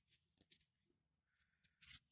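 Near silence, with a few faint clicks and light rustling as a plastic dishwasher pump part is turned over in the hand.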